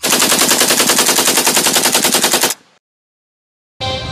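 A rapid, evenly spaced rattle of about a dozen sharp hits a second, like machine-gun fire. It lasts about two and a half seconds and cuts off suddenly. Music starts near the end.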